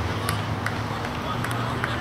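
Football training pitch: sharp, scattered thuds of footballs being kicked and players' distant calls over a steady low rumble.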